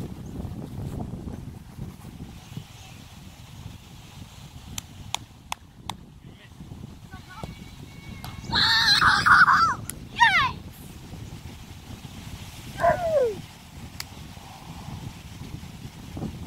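A boy yelling loudly for about a second as he shoots a football at the crossbar, followed by short falling cries about ten and thirteen seconds in, over steady wind rumble on the microphone. A few sharp knocks come around five seconds in.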